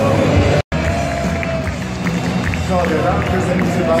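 Football stadium crowd noise with music and a voice over the public-address system, echoing in the arena. The sound cuts out completely for a split second about half a second in.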